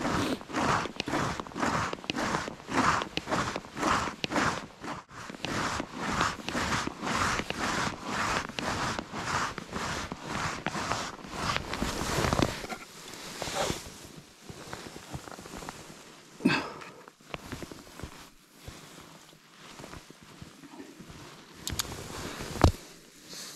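Footsteps of boots on snow-dusted new ice, about two steps a second, that stop about twelve seconds in, leaving only a few faint scattered scuffs.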